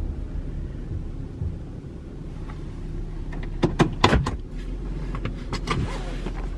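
Car rolling slowly to a stop, a low road rumble heard inside the cabin that fades over the first couple of seconds. About three and a half seconds in there is a quick cluster of sharp clicks and knocks, the loudest sounds here, and a few lighter clicks follow near the end.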